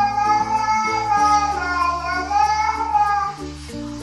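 A toddler singing one long, wavering note over background music; the note dips in pitch midway and stops shortly before the end.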